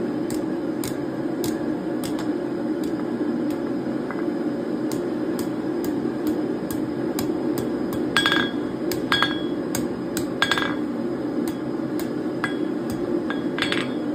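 Hand hammer striking hot steel bar on an anvil while bending a scroll: light taps about twice a second, with a few louder blows about eight to ten seconds in and again near the end that leave the anvil ringing. A steady low rumble runs underneath.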